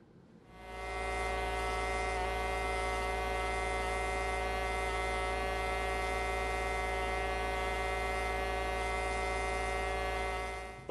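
Pneumatic scribe, a miniature air-driven jackhammer, buzzing at a steady pitch as its tip chips rock matrix away from around a fossil shell. It comes up to speed within the first second and then runs evenly.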